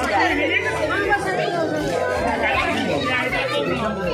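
Chatter of several people talking over one another, many voices overlapping with no single speaker standing out.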